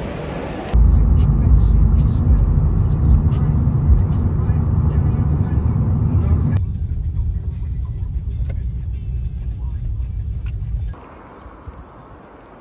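Car driving, its road and engine rumble heard inside the cabin as a loud steady low rumble. It cuts in abruptly under a second in, shifts about six and a half seconds in, and drops away suddenly near the end.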